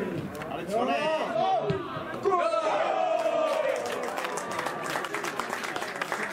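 Men's voices shouting across an outdoor football pitch, players' or spectators' calls loudest in the middle seconds, over general crowd noise from the sideline.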